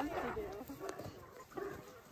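A few faint, brief clucks from a small flock of brown laying hens.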